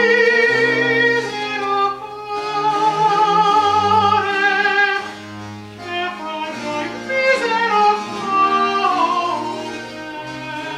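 Baroque opera aria: a male voice singing with vibrato, accompanied by a small ensemble of bowed strings over a bass line that steps from note to note, with a falling phrase near the end.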